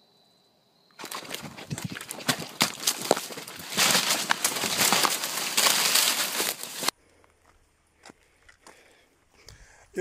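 A faint, steady high insect trill, then about a second in loud rustling and crackling handling noise as the camera is swung and moved rapidly through brush. The noise cuts off sharply near seven seconds.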